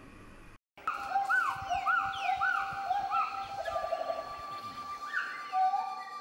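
Wild forest birds calling: clear whistled notes that rise and fall, repeated about twice a second, with a quick trill in the middle and a steady high whistle held through the last two seconds.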